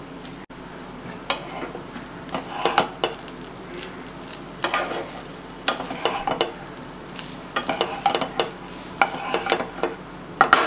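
Spatula stirring and tossing fried rice in a frying pan: scraping strokes come in short clusters about once a second, over a steady background hiss.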